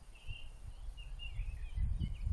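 Birds singing nearby, a string of short, wavering chirps, over a gusty low rumble of wind on the microphone.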